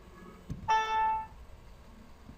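Windows system alert chime, one steady pitched tone lasting about half a second, sounding as a message box pops up to report that the partition operation has completed successfully. A short click comes just before it.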